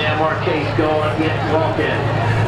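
A person talking, with a steady low drone underneath.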